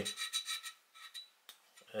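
Fingers rubbing and scraping along the ribs of a subwoofer driver's die-cast aluminium basket: a few short, faint rubs in the first half, then a single faint click about one and a half seconds in.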